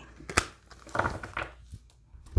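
Handling a deck of oracle cards: a sharp tap about half a second in, then a brief rustle and clicking of cards as the deck is set down on the table.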